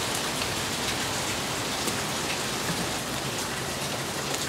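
Steady rain falling, an even hiss throughout, with a few faint snips of scissors cutting cardboard.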